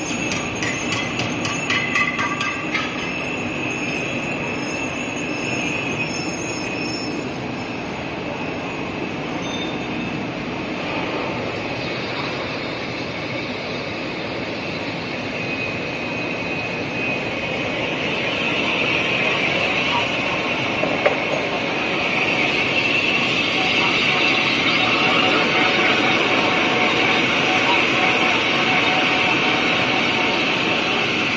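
Six-colour flexographic printing machine with its die-cutting unit and conveyor running: a steady mechanical whir of turning rollers with a high whine over it, quick regular ticking in the first few seconds, and growing louder past the halfway point.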